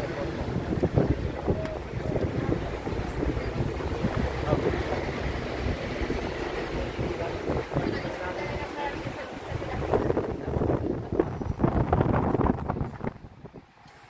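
Wind buffeting the microphone on the open top deck of a moving tour bus, with traffic noise beneath. The buffeting drops away sharply about a second before the end.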